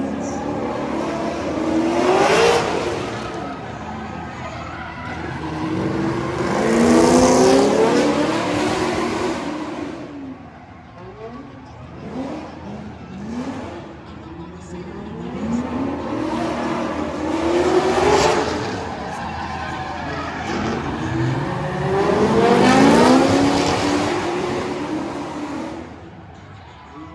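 Drift cars' engines revving hard and dropping back as they pass on the track, four loud swells of rising engine pitch with tyre noise mixed in.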